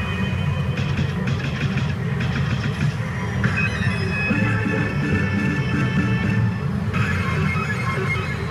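CR Lupin the Third pachinko machine playing its effect music and sound effects during an on-screen sequence, over a steady dense hall noise. The sounds change about three and a half seconds in and again near the end.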